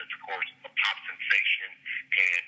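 Speech: a person talking, the voice thin and narrow as over a telephone line, with a faint steady hum underneath.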